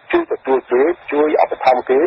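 Only speech: a Khmer-language radio news broadcast voice talking continuously, with the thin, narrow sound of radio audio.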